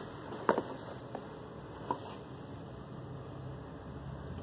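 Quiet room tone with three faint clicks and taps from handling the phone and the cardboard product boxes, the first the loudest.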